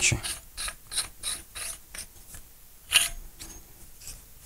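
Metal plumbing coupling being screwed by hand onto the threaded end of a metal pipe, the threads ratcheting in light, even clicks about three a second, then one louder click about three seconds in.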